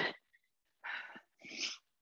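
A woman breathing hard from cardio exercise: two short, forceful breaths about a second in and half a second apart.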